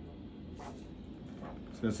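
Handheld vascular Doppler's speaker giving the dorsalis pedis arterial signal over a steady hiss: a rhythmic whoosh with each heartbeat. It is a good, strong, steady pulse, the sign of adequate blood flow to the foot. A man starts speaking near the end.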